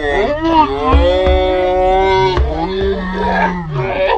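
Loud, drawn-out vocal cries from teenagers: a high held note for the first two seconds or so, then a lower held one that falls away near the end.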